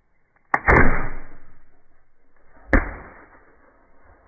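Homemade alcohol-fuelled pistol firing: a sharp click and then a loud bang about half a second in, dying away over a second. A second sharp bang follows about two seconds later.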